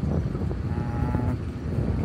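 Vehicle running along a road: a steady low rumble of engine and road noise, with a faint held tone near the middle.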